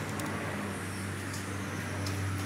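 A steady low mechanical hum, like a motor running, over a constant background rush.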